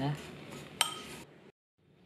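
A metal spoon stirring breadcrumbs in a ceramic bowl, with one sharp clink of the spoon against the bowl just under a second in that rings briefly.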